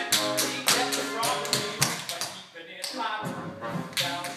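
Tap shoes striking a stage floor in quick, uneven rhythmic runs of taps, with a short lull about two and a half seconds in, over band accompaniment.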